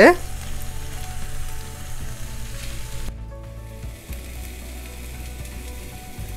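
Chicken tikka skewers sizzling on a hot cast iron grill pan, a steady frying sizzle that briefly dips about three seconds in.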